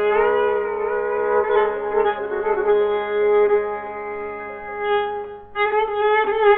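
Santur played in the Persian Dashti mode, its notes sustained by tremolo, with a brief break near the end before the melody resumes.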